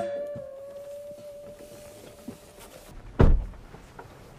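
A car door thunks once, loudly and heavily, about three seconds in. Before it, a faint steady tone fades away over the first couple of seconds.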